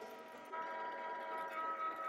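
Electric meat grinder running, its motor giving a steady whine of several even tones while it pushes venison through the fine grinding plate. The whine grows slightly louder about half a second in.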